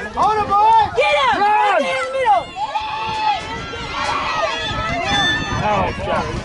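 Spectators shouting and calling out over one another during a youth football play, a run of overlapping yells rising and falling in pitch.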